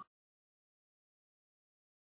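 Near silence: the sound drops out completely.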